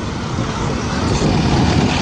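Road traffic driving past close by: the engines and tyres of vans, minibuses and trucks, a steady rush of noise.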